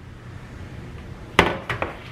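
A metal Gotham sheet pan holding steaks set down on a kitchen counter: one sharp clatter about one and a half seconds in, followed by a few lighter knocks as it settles.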